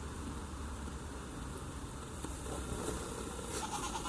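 A goat bleating, over a steady low rumble in the background.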